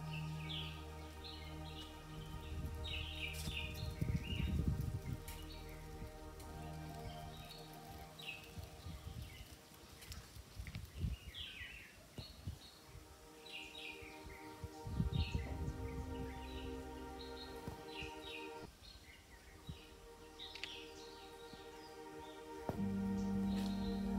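Small birds chirping over and over in short high calls, over soft steady background music, with low rumbling noise twice, about four seconds in and again near the middle.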